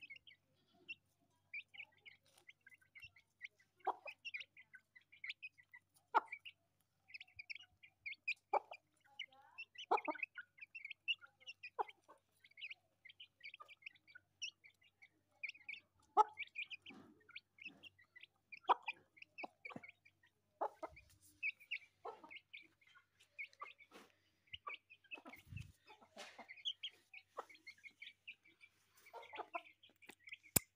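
Aseel hen clucking every couple of seconds while her chicks keep up a near-constant run of short, high peeps.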